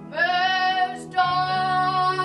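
A boy singing solo in a stage musical, holding two long sustained notes, the second beginning just after a second in, over quiet accompaniment.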